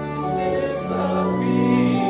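Many voices singing a hymn with organ accompaniment, the voices coming in right at the start over sustained organ chords.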